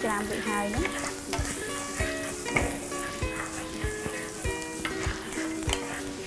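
Minced garlic sizzling in oil in a nonstick frying pan, stirred with a wooden spatula. Background music with a steady beat plays underneath.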